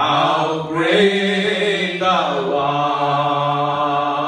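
Men singing a slow worship hymn into microphones, holding long drawn-out notes with slides between them.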